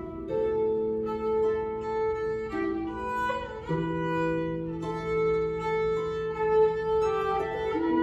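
Violin and harp playing a Persian melody together: the violin holds long bowed notes over plucked harp, sliding between notes a little over three seconds in.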